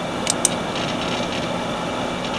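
A steady mechanical whirring noise with two sharp clicks close together near the start, followed by a faint, fast rattle.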